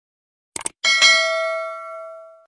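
A quick double mouse-click sound effect, then a struck notification-bell chime that rings with several clear tones and fades away over about a second and a half.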